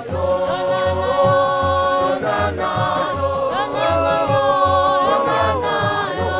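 A church choir singing a Sesotho gospel song in harmony, with long held notes, over a steady low beat at about two a second.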